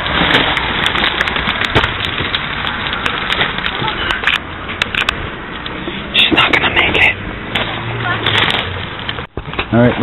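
Footsteps crunching and scuffing over loose gravel and broken stone, with a stream of small clicks and clatters. There are louder bursts of crunching about six and eight seconds in.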